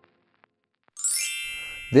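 A single bright electronic chime, a ding with a shimmering high ring, strikes about halfway in and fades away: the sound effect for an animated channel logo.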